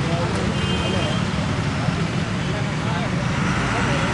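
Steady roadside background noise with a low rumble, typical of traffic passing on a road, with faint voices of people talking nearby.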